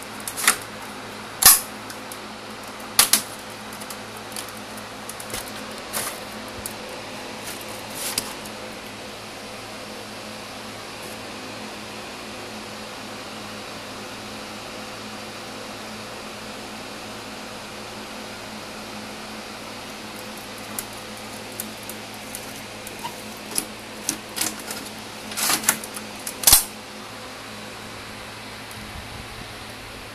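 Steady hum of a running desktop gaming PC's cooling fans. Sharp clicks and knocks come through it, a few in the first seconds and a quick cluster about three-quarters of the way through.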